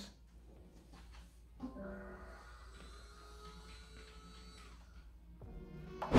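Ajax smart blind motor pulling the chain of vertical blinds to turn the slats shut. It starts with a small click about one and a half seconds in, runs as a faint steady electric whine, and stops shortly before the end. The noise is noticeable but quite bearable.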